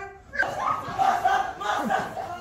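Several young voices shouting and yelling at once, overlapping, starting about half a second in.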